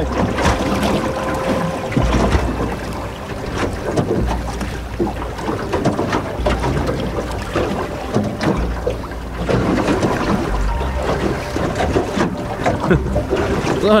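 Water rushing and bubbling over an action camera held underwater in its waterproof housing, a dense, muffled wash with frequent small knocks and clicks.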